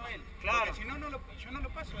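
Speech only: people talking, with a low steady rumble underneath.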